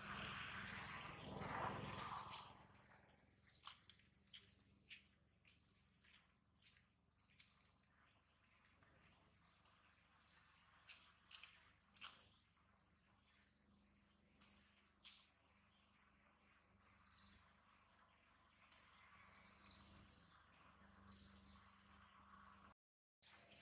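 Small birds chirping: many short, high notes repeating every fraction of a second, with a louder, duller noise in the first two seconds.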